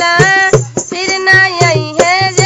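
A woman singing a desi folk song unaccompanied by other instruments except a regular beat of percussion strokes, holding long wavering notes.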